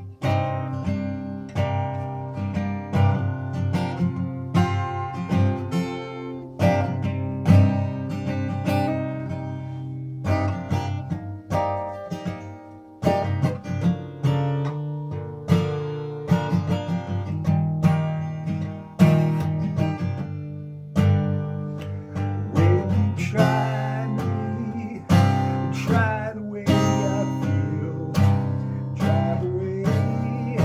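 Steel-string acoustic guitar with a capo, strummed in a steady rhythm of chords. A man's singing voice joins in over the strumming about three quarters of the way through.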